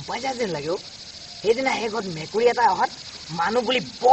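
Men talking in short spoken phrases over a steady, high-pitched chirring of night insects.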